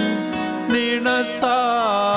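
A slow liturgical hymn: a voice sings a melody that glides between notes, over sustained instrumental chords.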